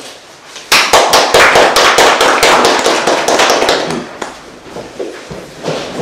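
A small group of people clapping. It starts about a second in and dies away after about four seconds.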